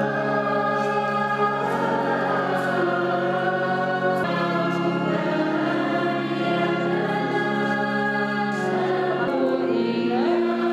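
A church choir singing a hymn in long, held notes, the chord shifting every second or two.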